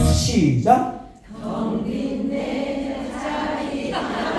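Backing music stops just after the start with a falling slide in pitch. After a short lull, a large group of women's voices sings a line together without accompaniment.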